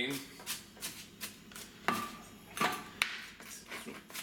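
Chef's knife chopping onion finely on a plastic cutting board: a series of irregular knocks of the blade against the board, roughly two a second.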